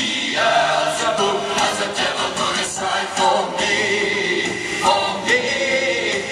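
Live music: a man singing into a handheld microphone over musical accompaniment, with fuller, choir-like vocal layers.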